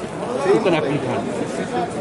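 Speech only: people talking, with a crowd chattering in the background of a large hall.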